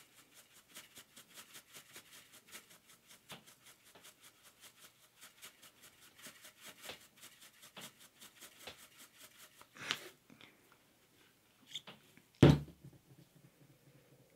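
Chunky silver glitter trickling from a cupped hand onto slime and the table top: a long run of faint, fast little ticks. A single loud thump comes near the end.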